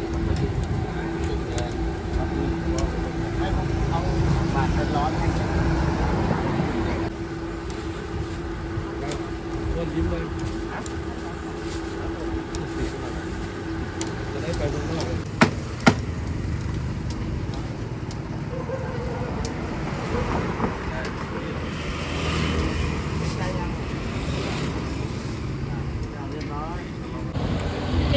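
Street-food grill stall ambience: a steady low rumble with voices in the background. A steady hum runs until about seven seconds in and then stops, and two sharp clicks come close together about halfway through.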